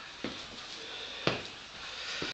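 Two short knocks about a second apart, the second louder: handling noise as a hand reaches for and grips the camera.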